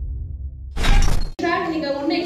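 End of a channel logo sound effect: a low rumble, then a loud crash like shattering glass about three quarters of a second in, cut off abruptly. A woman's voice through a microphone follows.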